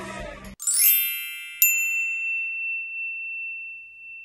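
Bright chime logo sting: a quick shimmering run of bell tones, then a single ding that rings and slowly fades. Crowd noise cuts off suddenly just before it.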